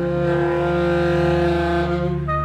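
Percussion ensemble with alto saxophone holding a loud sustained chord over a low drone, swelling with a rushing noise that breaks off near the end.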